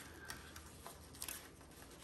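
A few faint ticks and crinkles of a Tegaderm transparent film dressing and its paper frame being handled and peeled away by gloved hands.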